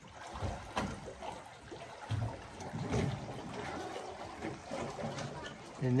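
Water rushing into a canal lock chamber through the wicket doors of the upstream gate as the lock fills, a steady churning wash with a few scattered knocks.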